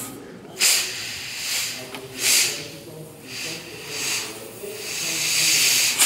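Compressed air hissing from an air blow gun pressed to a port of a BMW diesel's oil-to-coolant heat exchanger, in several short blasts and then a longer, louder one near the end. The air is pressure-testing the cooler for a leak between its oil and coolant sides, at around 5 bar.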